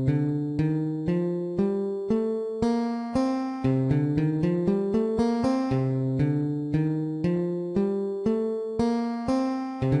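Guitar playing the C Dorian scale one note at a time at 120 beats a minute: two notes a second, climbing up the scale, with a run of quicker notes in the middle.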